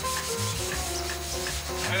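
Wet Scotch-Brite pad scrubbing the bare steel of a stripped car body, wiping on a rust-treating solution that turns the rust black. A steady rubbing scrape.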